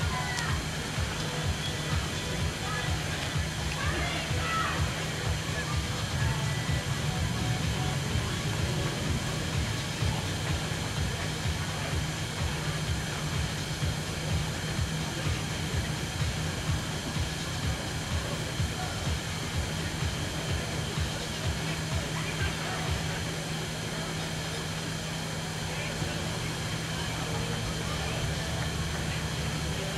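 Steady outdoor background noise with faint music and distant chatter.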